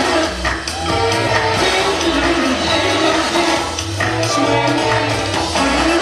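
Loud recorded dance music with a steady beat and a bass line, playing without a break.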